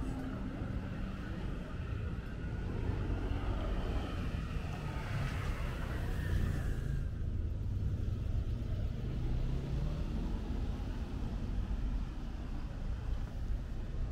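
Street ambience with a steady low rumble of motor traffic. A car engine's hum rises a little in pitch about eight seconds in as the car comes closer.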